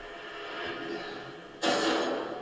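Faint steady background from the show's soundtrack, then, about one and a half seconds in, a single short, loud cough.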